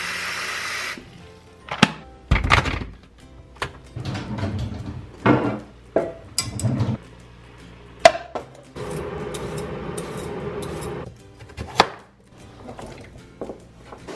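Tap water running into an electric kettle, stopping about a second in, then scattered knocks and clatters of the kettle lid and a saucepan being handled and set on an electric coil stovetop, with another stretch of running water in the second half.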